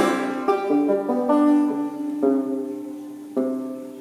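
Banjo being picked: several plucked notes and chords, spaced unevenly, each struck then left ringing and fading away.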